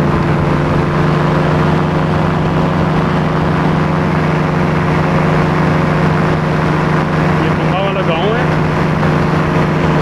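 Paramotor engine running at steady throttle with a constant drone, over a rushing haze of wind.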